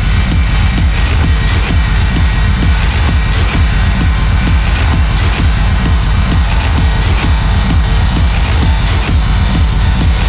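Industrial techno from a continuous DJ mix: a loud, steady, driving electronic beat with heavy bass and dense noisy textures above it.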